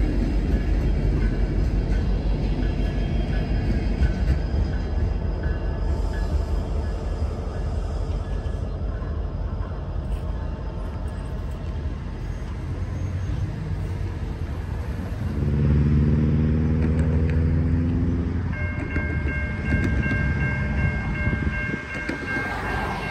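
Norfolk Southern freight train led by EMD SD60E diesel locomotives, rumbling steadily on the rails. A few seconds past the middle a diesel engine hum grows louder for about three seconds, and near the end a steady high-pitched whine sets in and holds.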